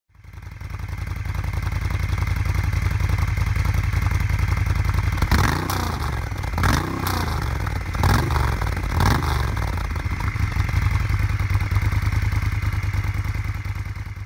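Moto Guzzi Griso's transverse V-twin engine idling, with the throttle blipped four times between about five and ten seconds in, each rev rising and falling back to idle.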